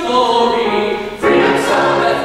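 Musical-theatre cast, a male soloist and a small chorus, singing together with grand piano accompaniment; the voices dip briefly about a second in, then come back in strongly on a new chord.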